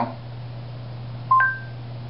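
Google Home smart speaker's short two-note electronic chime, a lower tone then a higher one, about a second and a half in, signalling it has taken in the spoken question. A steady low hum runs underneath.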